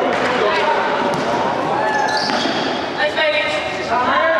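A basketball being dribbled on a court floor, with players and spectators calling and shouting over it.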